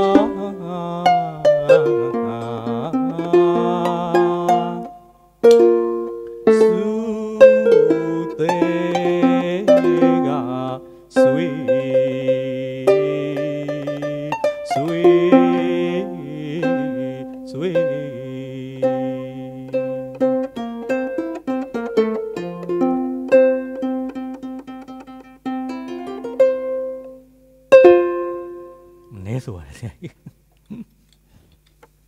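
Burmese arched harp (saung gauk) plucked under a man singing a Burmese classical patpyo song in long, bending phrases, with small hand cymbals and a clapper (si and wa) marking the beat. The music closes with a final plucked chord a second or two before the end.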